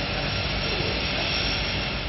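Steady engine noise of a small propeller aircraft running, an even rushing sound with no change in pitch.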